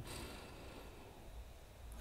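Quiet room tone: a faint, steady hiss.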